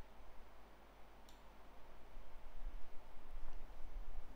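Quiet room tone with a low hum, and a single computer mouse click about a second in.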